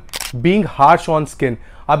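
A man's speech, with one short, sharp, camera-shutter-like sound effect right at the start, as a number graphic appears.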